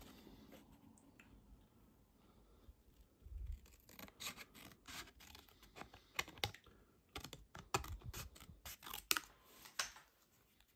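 Small scissors snipping through Fluid 100 watercolour paper, cutting around stamped images in a run of short, irregular, faint snips that start about three seconds in.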